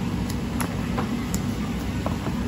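Steady low rumble of commercial kitchen machinery such as ventilation, with a few light clicks from gloved hands handling a plastic food tub.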